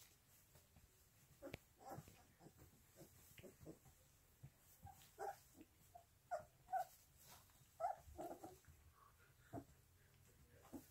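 Two-and-a-half-week-old poodle puppies whimpering and squeaking in short, thin cries that come more often in the second half, with faint scuffling among them.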